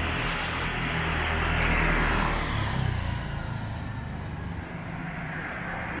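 A car going by on a street: low engine hum and tyre noise rise, then fade away about two and a half seconds in, leaving quieter street noise.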